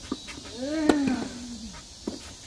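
A tennis racket strikes the ball once, a sharp crack just before the middle. Around it runs a drawn-out voiced call that rises and then falls in pitch.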